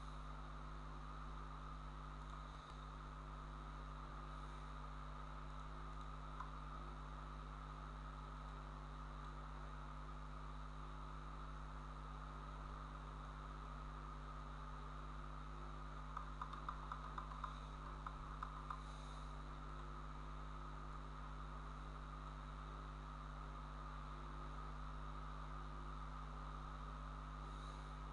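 Steady low electrical hum with a constant hiss, the background noise of the recording setup. Partway through comes a short run of faint clicks.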